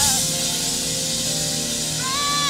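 A live gospel band holds sustained chords with drums. A sung phrase with wide vibrato slides down and ends just after the start, marked by a drum and cymbal hit.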